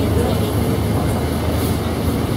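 Steady low rumble of a city bus in motion, heard from inside the passenger cabin.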